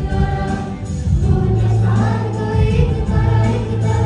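A group of female voices, a woman and three girls, singing a Bollywood song together through handheld microphones over musical accompaniment with sustained low bass notes.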